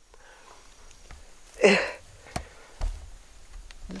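A quiet pause between sung lines, broken by one short, noisy intake of breath from a man about one and a half seconds in, and a couple of faint clicks.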